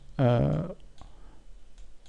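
A man's drawn-out hesitation sound "eh", then a few faint clicks of a computer mouse.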